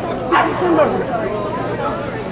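A dog gives a short bark about a third of a second in, over people talking.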